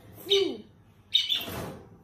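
Two short, high-pitched squeals from a young child. The first is brief and rises then falls in pitch. The second, a little past a second in, is louder and harsher.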